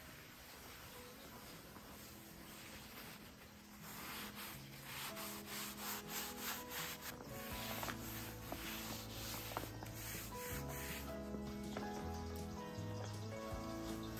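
A cloth rubbing finishing wax onto a painted wooden tabletop in repeated wiping strokes. Background music comes in about halfway through.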